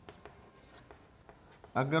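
Chalk writing on a blackboard: a run of short, light taps and scratches as a word is chalked out.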